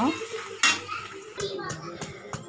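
Slotted metal spatula scraping and clattering against a metal kadai as sliced onions are stirred in sizzling oil. Near the end come several sharp knocks.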